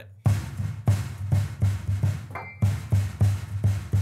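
A steady drum beat: low thumps about three a second, with a brief high ringing tone about two seconds in.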